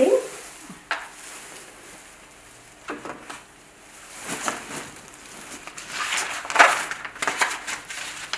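Handling noises: a paper observation chart rustling and a pen being picked up and moved on a trolley, in irregular bursts, the loudest cluster about six to seven seconds in.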